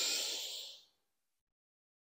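A woman's single audible breath during a cat-cow yoga flow, a soft airy rush that fades out about a second in.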